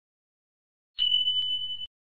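A single steady high-pitched electronic beep starts about a second in and lasts just under a second before cutting off abruptly.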